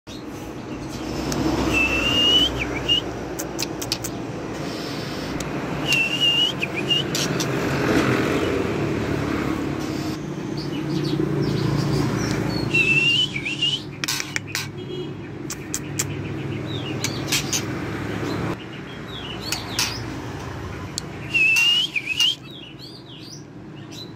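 White-rumped shama singing: a short rising whistled phrase every few seconds, with clicks and quicker notes in between. A low background rumble runs under it and fades about three-quarters of the way through.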